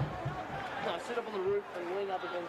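Indistinct, distant voices of people at an outdoor sports ground, talking and calling with no clear words, over a steady open-air background.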